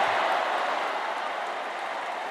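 Stadium crowd cheering and applauding a goal, the noise slowly dying away.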